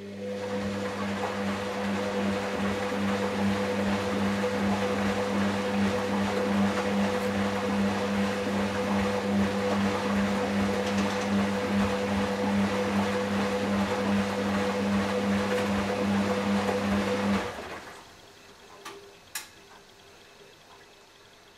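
Hoover DynamicNext DXA 48W3 washing machine running with a steady hum and a rush of water. It starts at once and cuts off abruptly about 17 seconds in, followed by a couple of faint clicks.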